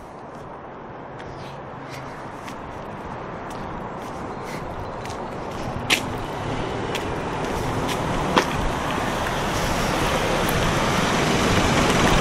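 Road traffic noise from cars, growing steadily louder, with two short sharp clicks about halfway through.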